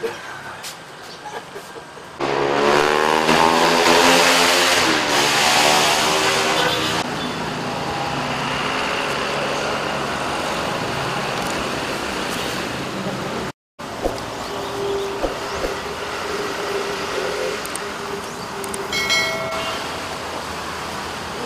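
Roadside traffic noise, with a vehicle passing close by, loudest from about two to seven seconds in, its sound sweeping as it goes past. A steady hum of road noise fills the rest, with a brief dropout about two-thirds through.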